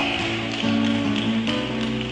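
Background music of sustained held notes that change pitch a couple of times.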